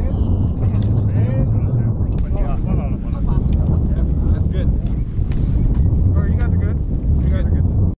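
People talking over a loud, steady low rumble that starts abruptly at the very beginning, with a few sharp clicks.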